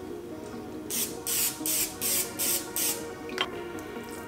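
Aerosol olive oil cooking spray hissing out in a quick series of about six short bursts, coating the inside of an air fryer so the breading won't stick, over background music.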